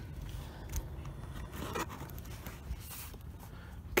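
Faint handling noise: light scrapes and rustles with a few soft clicks over a low steady hum.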